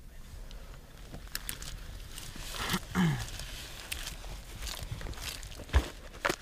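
Footsteps and the rustle of kit and dry grass as a soldier moves along a trench, with scattered small clicks. A single sharp, loud knock comes near the end.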